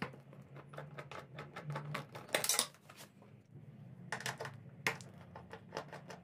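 Socket wrench working the 12 mm seat bolts of a motorcycle loose: a rapid run of light metallic clicks, with a couple of louder scraping rattles about two and four seconds in.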